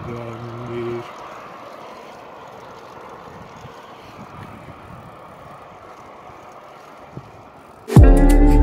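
Steady rush of wind and road noise while riding a bicycle along a highway, after a voice trails off in the first second.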